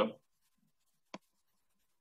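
End of a man's word, then dead silence broken once by a single short click a little over a second in.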